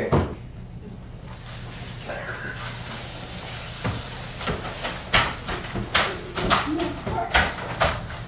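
Footsteps and a series of sharp knocks and clunks as a door is opened and shut, with the knocks growing more frequent in the second half.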